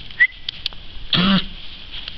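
A dog coughing and hacking as if something is caught in its throat, which the owner takes for a hairball: a brief sharp squeak near the start, then a longer hoarse hack a little past one second in.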